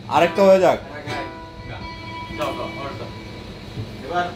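A guitar's plucked notes ringing on, with a man's voice loud in the first second and again briefly midway.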